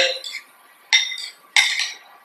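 Metal spoon clinking twice against a small ceramic bowl while tuna salad is stirred, the strikes about a second in and near the end, each ringing briefly.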